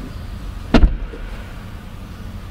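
Door of a 2022 BMW 220i M Sport (G42) coupé pulled shut from inside the cabin: one solid, thick thud about three quarters of a second in. It latches by the swing alone, with no soft-close.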